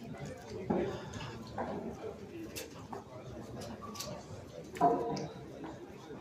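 Background murmur of voices in a busy hall, with a few sharp clicks and a louder burst of sound near the end.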